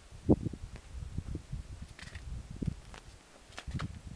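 Irregular low rumbles and thumps buffeting the camera's microphone, with a few faint clicks.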